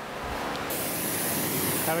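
Gas torch with a rosebud heating tip being lit: a soft rush of gas, then about two-thirds of a second in a louder, higher hiss starts suddenly and holds steady as the flame burns. The torch is preheating the cast iron vise body before brazing.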